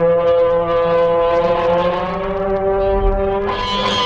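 Live rock instrumental: long held tones with many overtones, sliding slowly in pitch over a steady low drone, and a rush of noise swelling up near the end.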